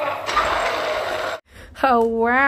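A sustained shout-like voice over a noisy haze, cut off abruptly about a second and a half in. A man then starts a drawn-out exclamation.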